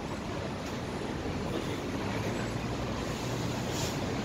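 Steady city street background noise: an even rumble of traffic with no distinct events, slowly growing a little louder.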